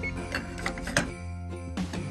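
Background music, with a few short beeps and a sharp click in the first second from an oven's control keypad being pressed to set the temperature.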